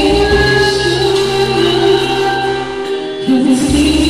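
A man sings a ballad into a handheld microphone over an instrumental backing track. He holds a long sustained note, breaks off briefly near the end, then comes back in louder.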